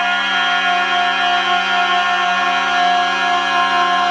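A man's voice holding one loud, unbroken yell on a single steady pitch.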